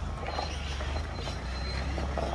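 Mitsubishi Pajero 4x4 rolling slowly: a steady low engine rumble with the crackle of tyres moving over gravel.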